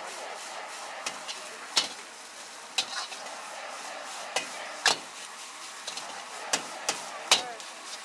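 Egg fried rice sizzling in a steel wok over a gas burner, a steady hiss. A metal wok ladle strikes and scrapes the wok about eight times at uneven intervals as the rice is stirred and tossed, with the loudest clang near the end.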